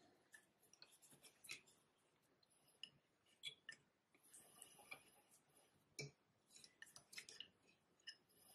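Near silence with faint, scattered clicks and ticks as hands handle the wooden spinning wheel's flyer and bobbin, with a brief faint hiss about halfway through.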